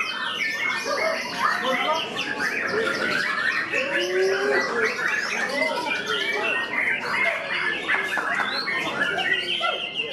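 White-rumped shama (murai batu) song: a dense, unbroken stream of rapid whistles, chirps and trills, several birds overlapping.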